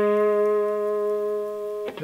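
A single note held on a Fender Telecaster Thinline electric guitar with a clean tone, ringing at one steady pitch and slowly fading, then cut off suddenly near the end.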